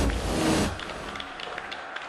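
Low rumble in a bowling centre that fades within the first second, then a steady background hum with faint clicks.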